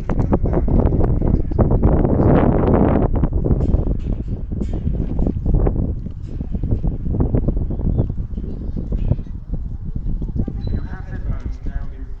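Wind buffeting the microphone in strong, uneven gusts, loudest in the first half, over the indistinct chatter of a waiting crowd.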